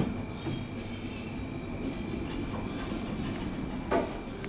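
A Thyssen passenger elevator, built in 2000, arriving at the landing and sliding its doors open, over a steady mechanical rumble with a thin high whine. A sharp click at the start and another near the end.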